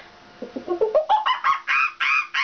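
A woman's vocal impression of a monkey: a fast run of hooting calls starting about half a second in, about five a second, each call rising in pitch, the run climbing higher and louder as it goes.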